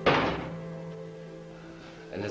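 A single sharp thud right at the start, dying away over about half a second, over steady sustained background music.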